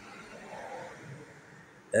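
Faint, even outdoor background noise with no distinct event. A man's voice starts again right at the end.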